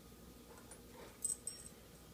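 Mostly quiet, with a couple of faint, brief high-pitched chirps a little over a second in from a plush squeak toy being mouthed by a puppy.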